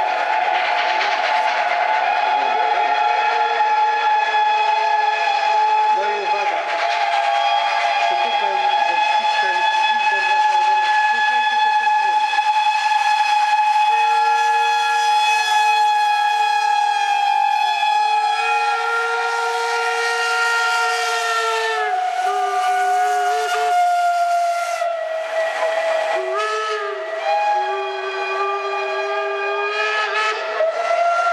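Several steam locomotive whistles blowing at once in one long overlapping chord of different pitches over a steady hiss of steam. Individual whistles cut out and others join in, shifting the chord a few times.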